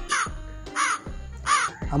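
A harsh bird-like call, three times and evenly spaced, over background music.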